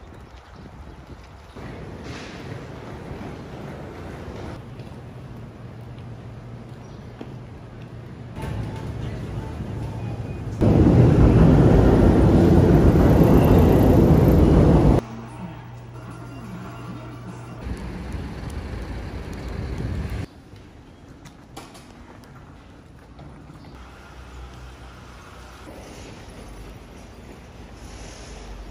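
Short ambient clips that change abruptly every few seconds, mostly quieter street and shopping-arcade background noise. About ten seconds in comes a four-second burst of loud video-game arcade din, the machines' music and sound effects, which is the loudest sound here.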